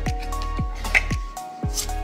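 Background electronic music: a steady kick-drum beat about twice a second under held synth notes.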